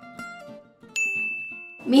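Edited-in sound effect: a few short plucked-string notes stepping downward, then about a second in a bright ding that holds one high tone for just under a second.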